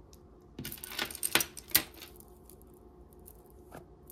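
Costume jewelry clinking and clicking as it is handled in a pile: a quick run of sharp clinks of beads and metal pieces about half a second to two seconds in, then one faint click near the end.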